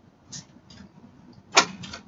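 A few light clicks and taps, with one sharper clack about one and a half seconds in.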